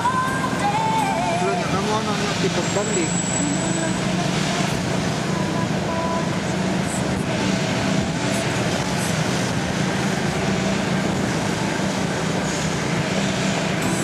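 Steady engine and road noise of a moving vehicle, heard from inside it, with a voice wavering over it in the first few seconds.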